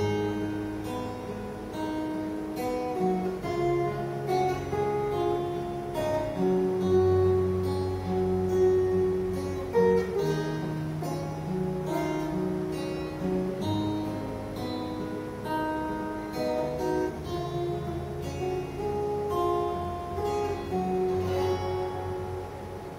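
Two acoustic guitars playing an instrumental piece together: a picked melody line over chords and held bass notes.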